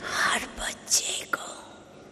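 A woman's soft, breathy, near-whispered speech into microphones: a few short syllables over the first second and a half, then a pause.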